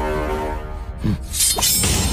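Soundtrack music holds a chord that fades about half a second in, then a short low falling swoop, then a loud, bright crash like shattering glass about a second and a half in, ringing on as a dramatic sound effect.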